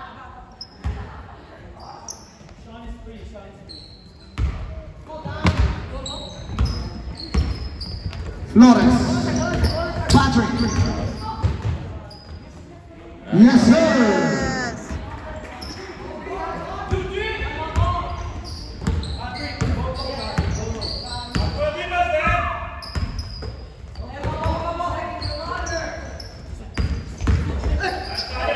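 A basketball bouncing on a hardwood gym floor during play, with shouting voices from players and spectators throughout. The voices get loud about eight and a half and thirteen and a half seconds in.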